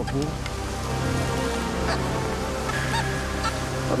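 Excavator's diesel engine and hydraulics running steadily while digging, with a short higher-pitched tone about three seconds in.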